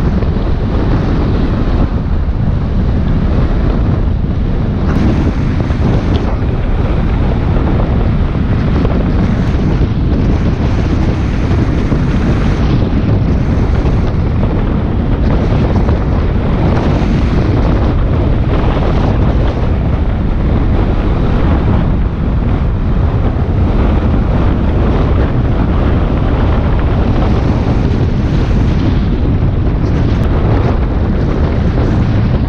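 Steady, loud wind rush buffeting the microphone of a camera on a motorcycle riding at road speed.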